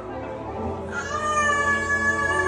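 Live band music, quiet at first; about a second in, a long high note comes in and is held over a steady bass.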